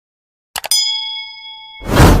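Subscribe-button animation sound effects: two quick mouse clicks about half a second in, followed by a bell-like notification ding that rings for about a second. A loud rushing noise swells in near the end.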